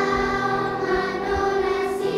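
A large children's choir singing, holding long sustained notes.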